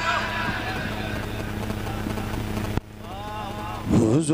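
A pause between sung lines of a naat, filled with a murmur of voices over a steady rumbling hiss from the hall's sound system. It cuts off abruptly almost three seconds in, and the reciter's singing voice comes back in, loud again at the very end.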